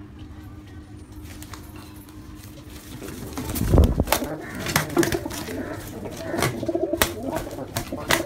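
Domestic pigeons fighting. About halfway through there is a loud rush of wing beats close to the microphone, then several sharp wing slaps mixed with cooing.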